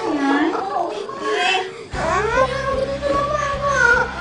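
A young child crying and wailing in distress. About halfway through, it cuts abruptly to soundtrack music: a steady low backing with one long held note and a melody over it.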